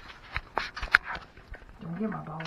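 Plastic packaging wrap crinkling and small parts clicking as a new portable generator is unpacked by hand, with a short vocal sound near the end.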